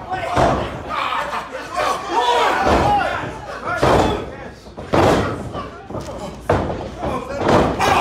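Pro-wrestling blows landing on a wrestler in the ring corner: several sharp smacks at uneven intervals, with voices shouting between them.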